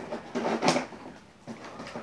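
Cardboard TV box being handled: hands scraping and rustling along the cardboard as he works at its top edge, with a faint knock later on.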